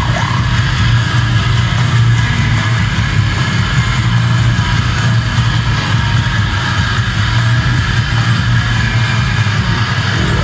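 Goregrind band playing live: a dense, unbroken wall of heavily distorted electric guitar and bass, loud and steady throughout.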